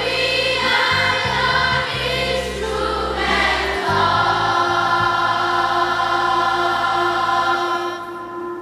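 Children's choir singing the line "When we are your instruments of peace" over a steady low accompaniment, the final notes held for several seconds before fading near the end.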